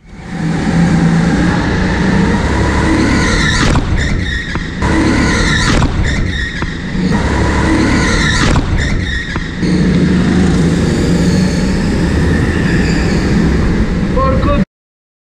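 Go-kart engine heard onboard, revving up hard along the straights and dropping back for the corners several times, with brief dips in the engine note.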